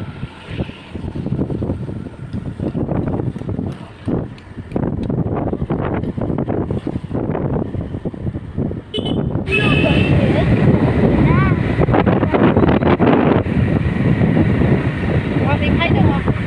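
Motorbike ride heard from the pillion seat: engine and road noise with wind buffeting the microphone, getting louder about halfway through.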